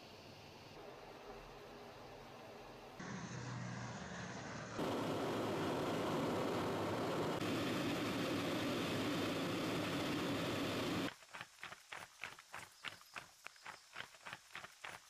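Steady rush of military jet aircraft noise, faint at first and loudest in the middle. About eleven seconds in it gives way to soldiers' boots striking the ground in step, about three footfalls a second.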